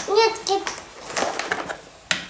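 A child's brief high-pitched voice sound, then faint clicks of plastic game sticks being handled.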